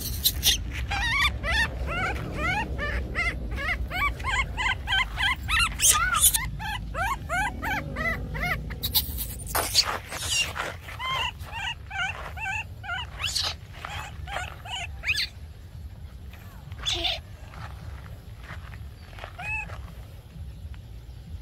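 Baby monkey squealing in a quick run of short, high-pitched cries, several a second, while a dog noses and mouths it; the cries thin out after about ten seconds. Scattered knocks and rustles run under them.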